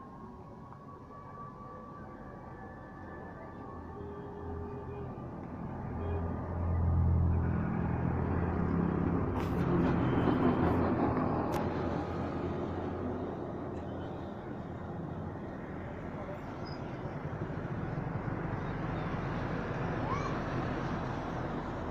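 Outdoor street noise with a motor vehicle engine passing close by. It swells from about six seconds in, is loudest for the next several seconds, then eases.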